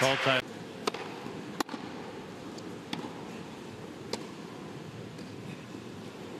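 Tennis ball struck by racquets in a rally: four sharp pops spread over about three seconds, starting about a second in, over a steady low crowd hush.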